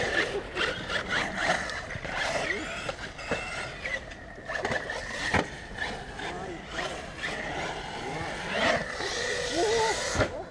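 Brushless RC car (Arrma Talion BLX 6S) running through and out of a puddle in a concrete bowl. Its motor is loud at first and then lower as it drives off, with a thin steady whine. Indistinct voices of people nearby come and go over it.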